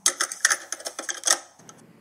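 A rapid, irregular run of sharp clicks, like typewriter keys, that dies away about a second and a half in, leaving faint room tone.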